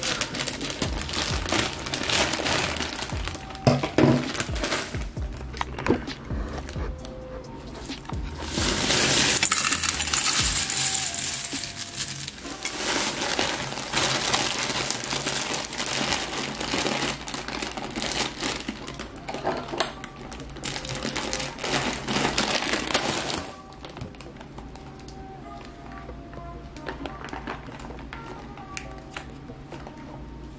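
Plastic cereal bag crinkling and rustling as it is handled, with dry bran flakes poured into a stainless steel bowl in a long steady rush from about 9 to 12 seconds in. The handling stops about 24 seconds in, leaving quieter background music.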